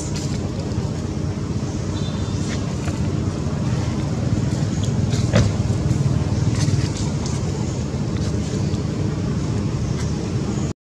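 A steady low rumble of outdoor background noise, with a few faint clicks over it.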